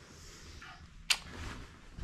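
A quiet dark room with a faint steady hiss, broken once by a single sharp click about a second in.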